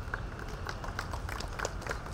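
Scattered clapping from a few audience members, irregular sharp claps several a second, over a steady low hum from the public-address system.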